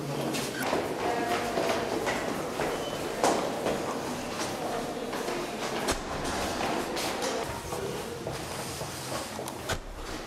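Footsteps of people walking along a hard-floored corridor and stairwell, with irregular clicks, knocks and rustling, and faint voices in the background.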